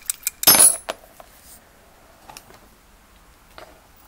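A motorcycle shock body being shaken, rattling twice, then one loud metallic clink about half a second in as the valve emulator drops out onto the bench, followed by a few faint clicks.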